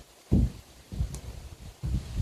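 Boot footsteps on a wooden subfloor, a few low thuds with the heaviest about a third of a second in, then a wooden board knocking down onto the floor near the end.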